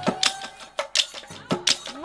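Nagara drums of a Nagara Naam group playing a run of quick, sharp strokes, about four a second, unevenly spaced.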